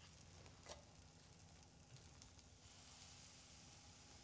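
Near silence, with a faint sizzle of food frying in hot butter in a pan and a soft tick about two-thirds of a second in.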